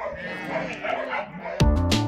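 Dogs whining and yipping, cut off about one and a half seconds in by music with a steady beat.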